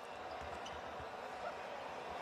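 Faint court sound of a pro basketball game in a near-empty arena: a low steady background hum with a basketball bouncing on the hardwood floor.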